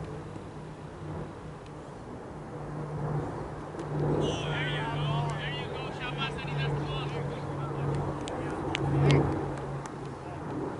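Outdoor field ambience with a steady low hum and faint distant voices. A rapid run of high chirps comes about four seconds in and lasts some three seconds, and a few sharp clicks follow near the end.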